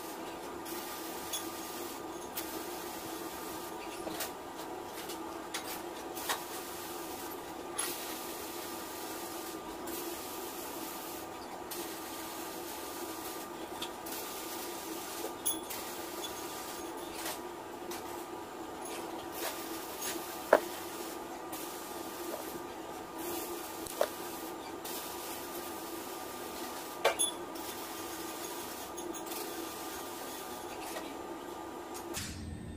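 Scattered small metallic clicks and taps of pliers gripping and bending stainless-steel TIG welding wire, over a steady low hum.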